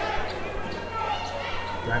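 A basketball being dribbled on a hardwood gym floor, bouncing against a background of voices in the arena.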